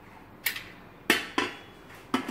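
A stainless-steel pressure cooker lid knocking against its pot as it is handled: three sharp metallic clicks, the second one, about a second in, the loudest and ringing briefly.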